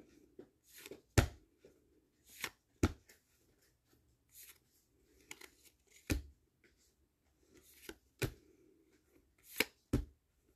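Trading cards being flipped through one at a time in the hand, each card slid off the stack with a short, sharp snap, about six times at uneven intervals.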